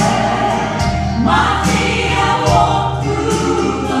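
Gospel trio, a man and two women, singing in close harmony into microphones over instrumental accompaniment with a bass line.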